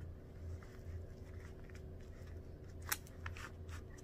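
Faint crinkling and clicking of fingers pressing and shaping the nose piece of a 3M N95 respirator, with one sharper click about three seconds in, over a steady low room hum.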